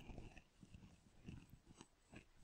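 Near silence, with a few faint, scattered keyboard clicks from typing code.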